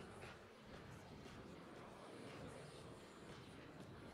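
Faint, even outdoor background ambience of a busy pedestrian promenade, with soft indistinct sounds of distant people and no distinct event.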